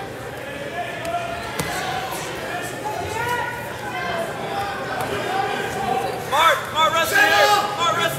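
People talking in a large, echoing gymnasium, then loud shouting from about six seconds in.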